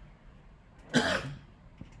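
A man coughing once, a short burst about a second in, in a quiet room. He puts it down to not having brought water rather than illness.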